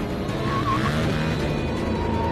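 Car engine running hard with a short tyre squeal about half a second in, over background music.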